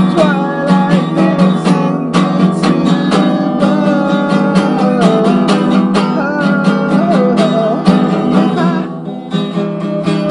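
Acoustic guitar strummed steadily in an acoustic punk song, with a melody line bending in pitch above the chords; the playing thins out briefly near the end.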